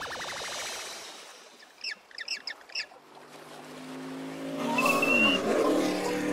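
Cartoon sound effects: a wobbling electronic warble climbs in pitch and fades out in the first second. A few short high chirps follow around two seconds in, then a car engine and tyre noise swell in over the last two seconds as a vehicle approaches.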